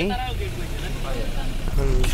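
Low, steady rumble of a moving road vehicle heard from on board, with a voice speaking briefly at the start and again near the end.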